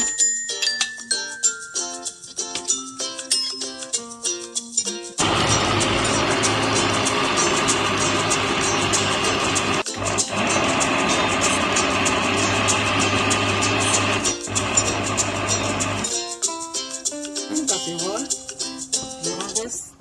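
Countertop blender motor running for about ten seconds, puréeing chopped okra, with two very brief breaks. Background music plays before and after it.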